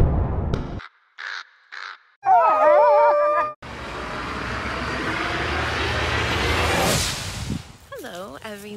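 Spooky sound effects: the tail of a deep boom dies away, then a crow caws twice briefly and once long and drawn out. A rushing, wind-like noise then swells for several seconds.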